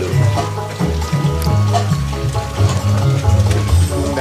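Background music with a prominent bass line moving in steady steps under held higher notes.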